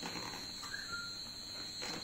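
Quiet room with the soft rustle of a paperback picture-book page being turned by hand, strongest near the end.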